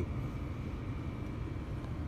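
Steady low rumble inside a car cabin, with a faint thin high tone running through it.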